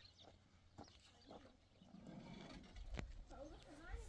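Faint rural ambience with scattered animal calls, a single sharp click about three seconds in, and a wavering call near the end.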